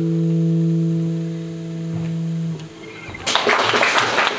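The last held chord of a song for acoustic guitar and voices, ringing steadily and stopping about two and a half seconds in. After a short pause, audience applause breaks out near the end.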